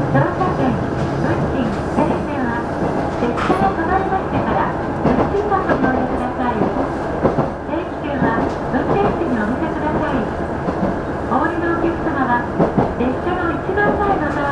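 KiHa 110 series diesel railcar running at speed, heard from inside the car: engine noise mixed with the wheels running on the rails.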